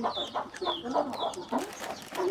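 Chickens clucking, a run of short calls several times a second, some brief and low, others high and falling in pitch.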